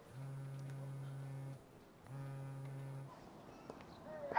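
Mobile phone vibrating on an incoming call: a steady low buzz in two pulses, the first about a second and a half long, the second about a second, with a short pause between.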